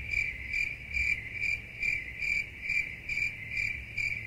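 Cricket chirping sound effect: a steady high chirp pulsing about three times a second, the stock 'crickets' gag for an awkward silence where nobody laughs.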